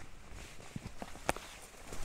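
Footsteps of hiking boots on a rocky, gravelly bush track: a few scuffing footfalls, with one sharper click of boot on rock a little past a second in.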